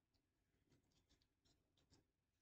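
Very faint rustles and snaps of a deck of cards being shuffled in the hands, over near silence.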